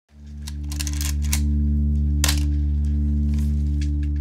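A sustained low musical drone: a held chord of steady tones that fades in quickly at the start and then holds, wavering slightly, with a few faint scattered clicks over it.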